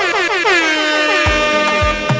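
A DJ's horn-like sound effect over dance music on a sound system: one loud sweep falling steeply in pitch and then holding low, with a thumping drum beat starting about a second and a half in as the next track begins.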